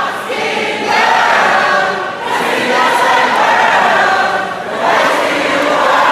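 A large concert crowd singing along together in phrases of a couple of seconds each, with short breaks between phrases.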